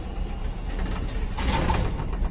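Mechanical rumble from a 1998 KMZ lift's automatic sliding car doors in motion, with a louder rushing noise about one and a half seconds in.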